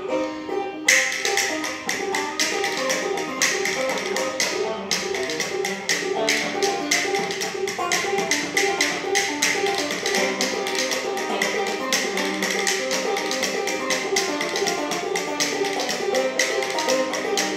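Banjo picking a steady tune, joined about a second in by fast, sharp body percussion: hands slapping thighs and chest in rhythm. The slapping thins out briefly around five seconds in, then carries on with the banjo.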